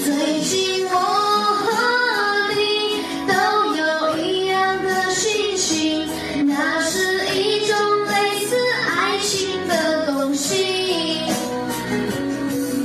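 A young male singer's high voice singing a song in continuous melodic phrases over backing music.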